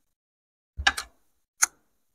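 Cutlery clicking on plates and dishes at a table: a quick cluster of two or three clicks about a second in, and a single click a little later.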